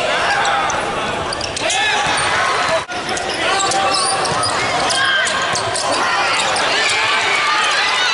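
Basketball game sound: a ball bouncing on the hardwood court and sneakers squeaking, over voices and shouts from players and crowd. The sound drops out briefly about three seconds in.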